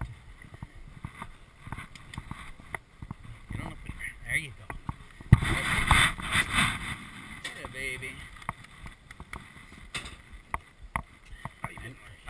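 Knocks and clatter as a horse is walked into a metal starting-gate stall, heard close on a chest-worn camera. About five seconds in, a sharp knock opens a loud burst of rattling and rubbing that lasts a second or two; faint voices are in the background.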